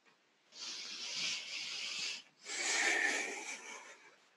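A person breathing audibly close to the microphone: two long, airy breaths of about a second and a half each, the second louder.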